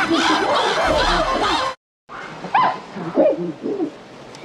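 Animated grasshopper creature's vocal effects, built from chimpanzee- and monkey-like calls: fast chattering hoots that swoop up and down in pitch. They come in two runs, a dense one that cuts off just before halfway, then after a brief break a sparser run of separate hoots.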